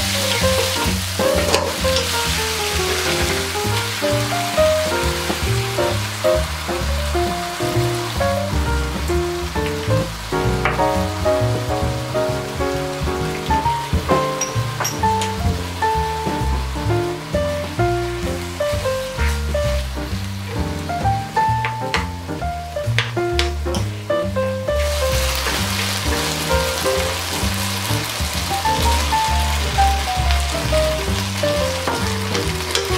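Oil sizzling in a frying pan as diced pork, onion and pineapple are stir-fried, with background music playing throughout. The sizzle dies down in the middle, after rice and barbecue sauce go in, with a few clicks of the spatula against the pan, and rises again near the end.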